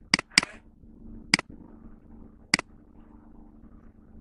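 Computer mouse button clicking four times: two quick clicks at the start, then single clicks about a second apart, over a faint steady hum.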